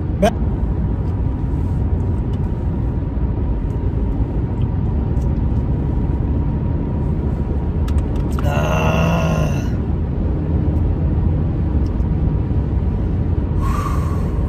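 Steady road and engine rumble inside a moving car's cabin. About eight and a half seconds in there is a brief voiced sound from a person, lasting about a second.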